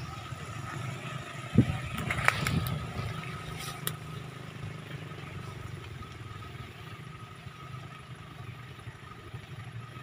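Vehicle engine running steadily under the load of towing a van stuck in mud, with a sharp thump about one and a half seconds in and a few clicks and knocks over the next two seconds.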